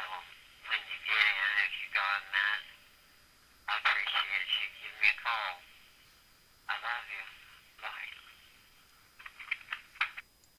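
Speech only: a woman's voicemail message, thin and narrow like a phone line, spoken in short phrases with pauses between them.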